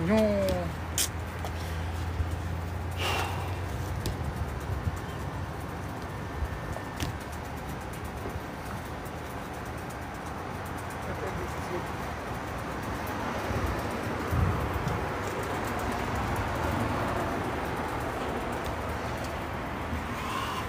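Background noise with faint, indistinct voices, a low steady hum for the first few seconds and a few sharp clicks.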